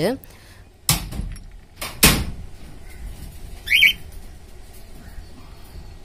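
Two sharp knocks, the second the louder, from a hand tool working on the screws that hold a plywood nest box to a wire-mesh cage. A cockatiel gives a short double chirp near the middle.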